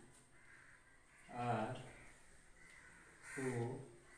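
Crows cawing: two separate caws, about 1.5 s and 3.5 s in, each about half a second long.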